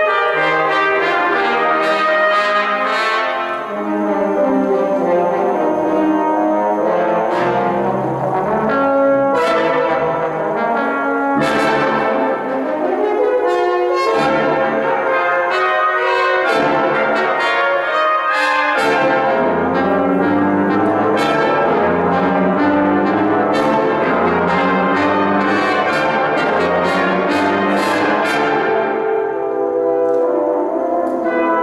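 A brass choir of trumpets, horns, trombones and tuba playing a slow piece in sustained chords, the harmonies shifting every second or so. A low bass line comes in about two-thirds of the way through.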